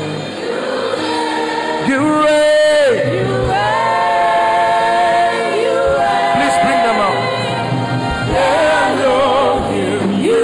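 Choir singing a gospel worship song, with long held notes that slide between pitches and waver near the end.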